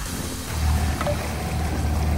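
Small motorboat under way: a steady low rumble of the outboard engine and rushing water that rises about half a second in, with background music underneath.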